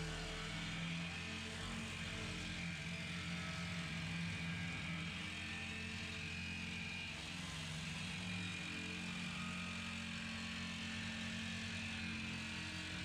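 Reciprocating saw (Sawzall) with a metal-cutting blade running steadily as it cuts through the steel lid of a 55-gallon drum along a line scored by a grinder.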